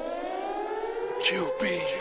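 A siren sound in a music soundtrack: a steady wailing tone slowly rising in pitch, with a couple of short swooshes near the end.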